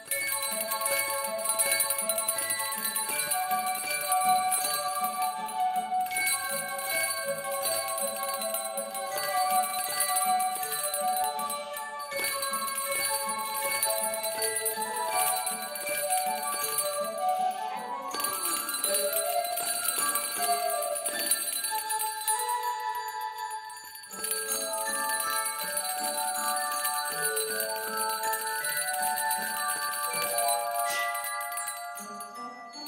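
Music with a stepping melody, with small metal handbells rung along with it by a group of children. The sound drops away briefly about three-quarters of the way through.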